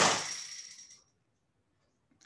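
A single sharp clink of something small and hard, ringing on for about a second as it fades.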